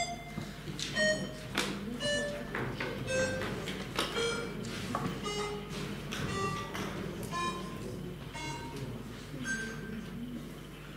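Electronic voting system's signal while a vote is open: a sequence of short pitched electronic tones, about one a second, mostly stepping down in pitch.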